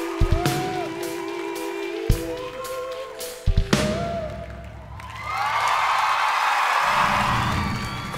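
The band holds its last chord, with a few sharp hits, as a ballad duet ends. About five seconds in, a large studio audience breaks into cheering and applause.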